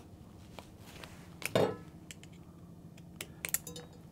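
Light metallic clicks from needle-nose pliers working the small lock washer and spring off a WessView monitor. The clicks are scattered, with a quick cluster near the end, and a short vocal sound about halfway.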